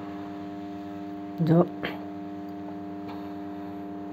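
Steady electrical mains hum with a ladder of evenly spaced overtones, interrupted once by a short sung syllable about one and a half seconds in.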